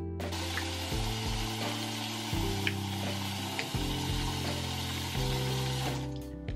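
Water from a bathroom faucet running steadily into a ceramic sink, over background music with slow, held low notes.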